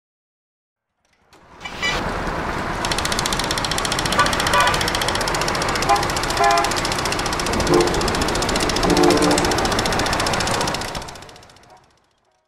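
Street traffic noise with several short car-horn toots, starting about a second in and fading out near the end.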